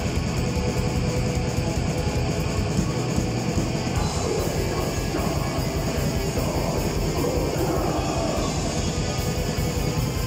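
Metal band playing live: distorted electric guitars and fast, dense drumming in a loud, unbroken wall of sound, with no pause.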